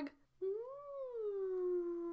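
A woman humming one drawn-out "mmm", its pitch rising and then sinking into a level hold.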